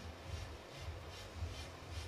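Quiet room tone of a billiards hall, with a faint low hum.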